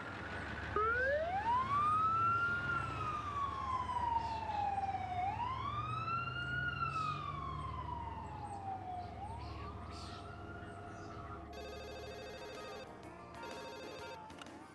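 Emergency vehicle siren wailing in slow cycles, each a rise in pitch followed by a longer fall. There are about three cycles, fading out after about ten seconds. Near the end a telephone rings.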